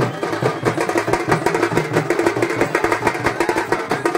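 Traditional festival drums played fast and loud by a procession band, a dense stream of rapid strokes over a steady low hum.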